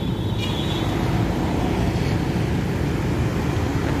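Steady low rumble of road traffic going by.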